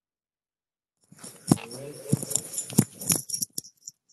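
Handling noise over a video-call microphone: rustling and clatter with several sharp knocks and clicks, cut in and off abruptly by the call's audio gate.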